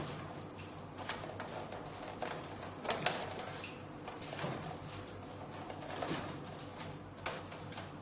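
Plastic front cabinet of a Samsung mini-split indoor unit being handled and pressed into place: a handful of sharp plastic clicks and knocks, spread unevenly, over light handling noise.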